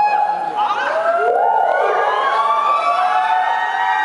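Women's voices through handheld stage microphones, singing or vocalising with long held notes that slide up and down, two voices overlapping.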